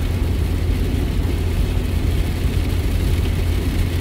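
Steady low rumble of road and engine noise inside a moving car's cabin, driving on a rain-wet road.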